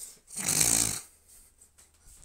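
A man's short, breathy laugh: one unvoiced puff of air forced out through the nose and mouth close to the microphone, lasting under a second.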